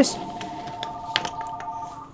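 A few light clicks and taps of pens being picked up and set down on a wooden tabletop, the sharpest a little after one second in, over a faint steady tone.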